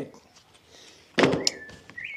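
A single dull thunk about a second in, followed by a couple of light clicks: a small cardboard product box and its lid being handled and set down on a cloth-covered table.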